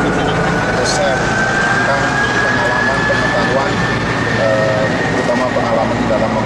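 A turbine engine running steadily on an airfield apron, its thin whine slowly rising in pitch, with faint voices in the background.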